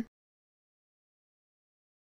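Silence: the sound track is empty after the last syllable of a spoken word cuts off at the very start.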